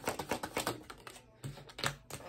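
A deck of tarot cards being shuffled hand over hand: a rapid, even run of soft clicks, about ten a second, that fades out about a second in. Two separate taps follow near the end.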